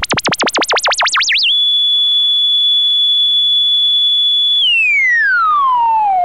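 Synthesizer tone whose pitch wobbles rapidly up and down over a wide range. The wobble slows and settles about one and a half seconds in onto a steady high note, which starts gliding downward near the end.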